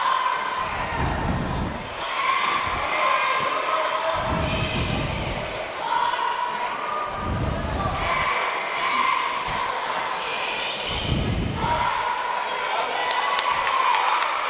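A basketball being dribbled on a gym's hardwood floor during live play, with voices in the background.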